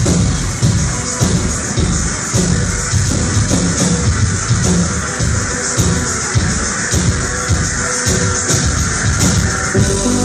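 Electronic synth-pop band playing live, loud through a venue's PA, with a steady pulsing beat.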